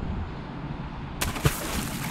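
A man sipping beer from a stemmed glass: a low outdoor rumble, then, a little over a second in, a sudden hissing draw of air and liquid with a single click, which carries on.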